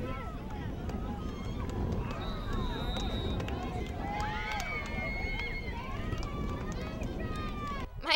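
Indistinct overlapping voices chattering at a distance, over a steady low rumble.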